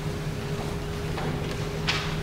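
Chalkboard being wiped with an eraser: a soft, even scrubbing over a steady low hum, with two light knocks in the second half.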